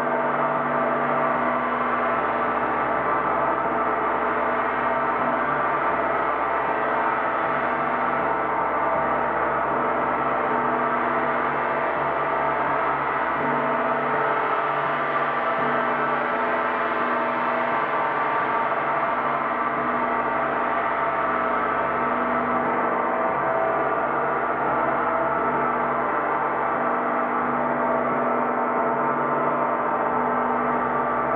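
Large hanging gong played with soft felt-headed mallets in a continuous roll. It makes a steady, dense drone of many overtones at an even loudness, with no single strike standing out.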